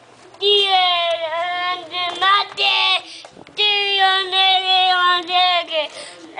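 A toddler's high voice in long, drawn-out sing-song calls, a young boy mimicking a football commentator's play-by-play.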